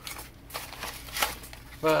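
Rustling of a paper mailer and its foam packing being handled and pulled open, in a few short bursts, the loudest about a second in.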